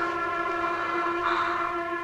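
A held chord from the film's background score: several steady tones sustained together without a break.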